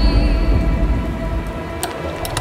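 Low, rumbling cinematic drone with a hiss over it, slowly fading, then a sharp click near the end as a turntable's start button is pressed.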